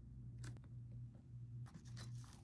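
Faint handling of a fabric-and-mesh pencil case full of pens: a light click about half a second in, then soft scratchy rustling near the end, over a steady low hum.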